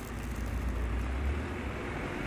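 Low, steady rumble of a passing motor vehicle, strongest about a second in.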